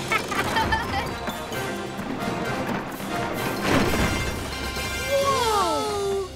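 Cartoon soundtrack of music and sound effects, with a crash-like burst of noise about two-thirds of the way through and falling, gliding tones near the end.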